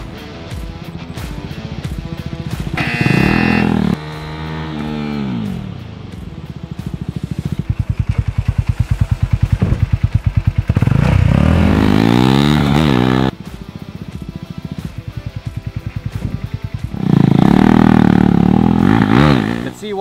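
KTM RC 390's single-cylinder engine revving as the bike is ridden in hard and braked into a stoppie. It goes in three passes, each rising and then falling in pitch, with an abrupt cut in the middle. Music plays underneath.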